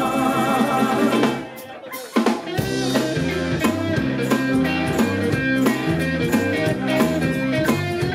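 Live band jam with harmonica, electric guitar, piano, tambourine and drums. The band drops out for about a second, starting about one and a half seconds in, then comes back in with a repeating bass line and drums.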